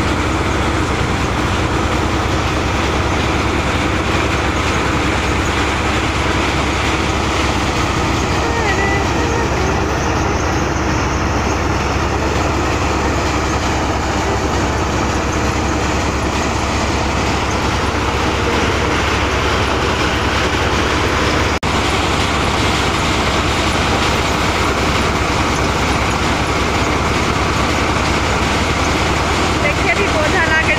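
Tractor-powered paddy thresher running steadily as bundles of rice stalks are fed into its drum, a continuous even mechanical drone.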